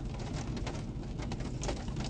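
Faint, steady low rumble of a car's cabin.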